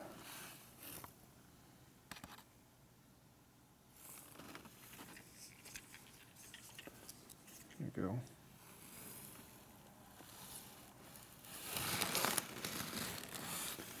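Faint hand-handling noise close to the microphone: a few small clicks about two seconds in, soft rubbing, and a louder rustling scrape near the end. A man says a couple of words about eight seconds in.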